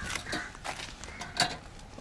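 A few short, scattered knocks and light clatter, with low background noise between them.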